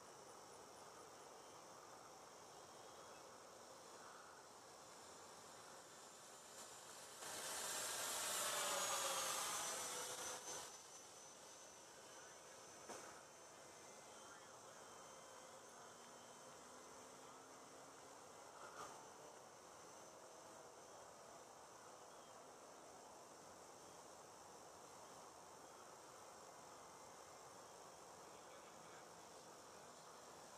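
Four-motor electric RC model B-17 bomber flying past. Its propeller whine swells up about seven seconds in and fades away by about ten seconds, dropping in pitch as it passes. The rest is a faint, steady high hiss.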